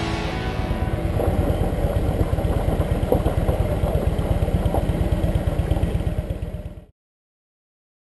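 Motorcycle engine running at road speed, a rapid low pulsing rumble, with background music fading out at the start. The engine sound fades and cuts to silence about a second before the end.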